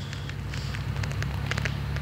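Steady low rumble of a car engine idling, with crackling noise on the phone microphone.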